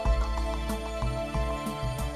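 Instrumental background music with held notes over a low bass line.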